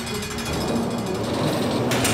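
A fast mechanical rattle over background music.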